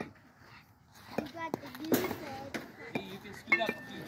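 Youth baseball field sounds: faint scattered voices of players and coaches, a sharp knock a little before halfway, and two metallic clinks near the end, the last one ringing briefly.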